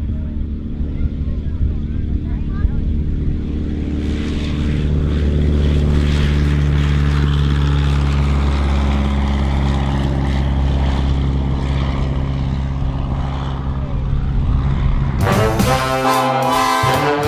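Auster AOP.6 light aircraft's de Havilland Gipsy Major four-cylinder engine and propeller running steadily as the plane flies low past, growing louder about four seconds in. Brass band music comes in near the end.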